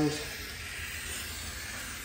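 Glastar circle cutter's wheel scoring a circle into a sheet of clear glass as it is pulled around, a steady, even hiss.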